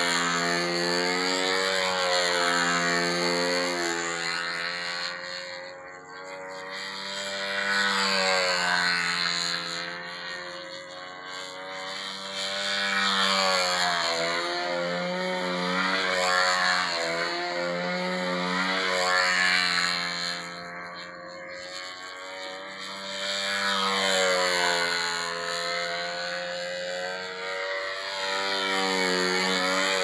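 Control-line stunt model airplane's small engine buzzing steadily, its pitch bending up and down and its loudness swelling and fading every several seconds as the plane circles and loops on its lines.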